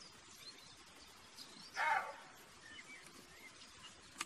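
A roe deer buck gives one short, rough bark about two seconds in, over faint birdsong.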